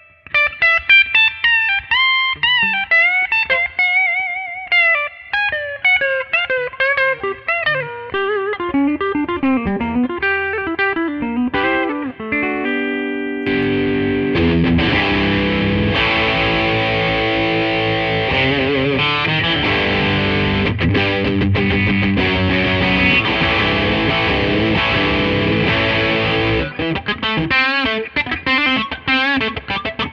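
Gibson Custom Shop Historic 1957 Les Paul goldtop on its bridge pickup (BurstBucker 2), played with distortion. It starts with single-note lead lines with bends and vibrato, moves into dense chords and riffs about halfway through, and ends in choppy, stabbed chords.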